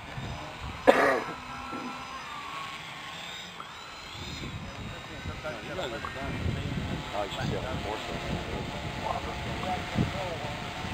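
Electric RC hexcopter's six motors and propellers whirring as it climbs from a low hover, running on a 3-cell LiPo battery. A laugh is heard about a second in.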